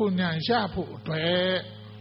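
A man speaking into a microphone, ending on one long held syllable, then breaking off about a second and a half in, over a steady mains hum.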